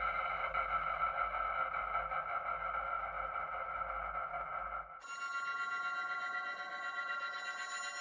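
Sustained electric-guitar drone from the Ambient Guitars sample library: a steady cluster of held, shimmering tones. About five seconds in it switches abruptly to a different, brighter and thinner drone.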